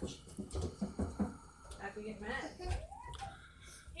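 Faint, indistinct voices talking quietly in a room.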